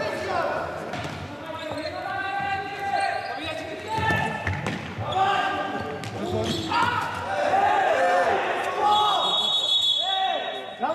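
Indoor futsal play in a sports hall: a ball kicked and bouncing on the wooden floor, shoes squeaking and players shouting, all with the hall's echo.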